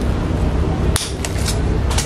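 Bonsai scissors snipping through a small branch of a Sancang (Premna) bonsai: one sharp snip about a second in, then a few lighter clicks of the blades, over a steady low hum.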